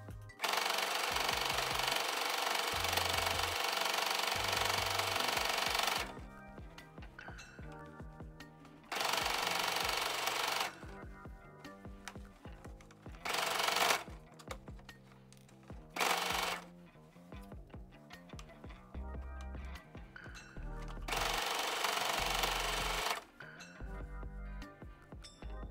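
Electric sewing machine stitching a sleeve seam in short runs: a long run of rapid needle clatter at the start, then four shorter bursts with pauses between them.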